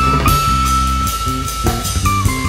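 Live jazz band playing an instrumental: the electric guitar lead steps up and holds one long note over low bass notes and drum kit.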